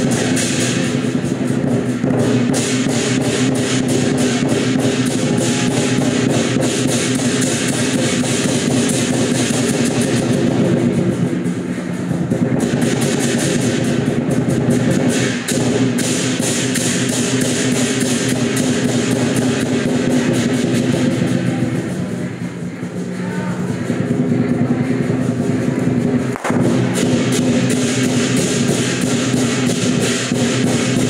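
Temple procession music: steady drumming and percussion under sustained held tones, playing on without a break.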